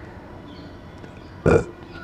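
A pause with low room noise, broken about one and a half seconds in by one brief, fairly loud throat sound from the man, like a small burp.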